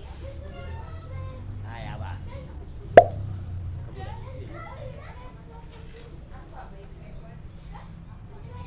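Voices of people talking in the background, children's voices among them, with a single sharp click or slap about three seconds in, the loudest sound here.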